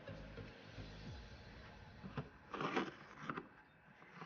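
Faint rustle and scrape of 3 mm braided cord being handled and pulled into a half-hitch knot, with a short burst of rustling strokes about two and a half seconds in.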